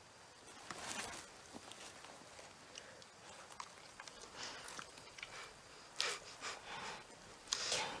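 Soft eating sounds of a girl cramming handfuls of fruit into her mouth: a few faint smacks and sniffs spread through, the last and loudest near the end.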